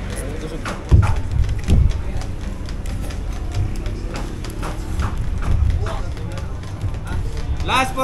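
Indistinct background chatter from onlookers over a steady low hum, with two low thumps about one and two seconds in.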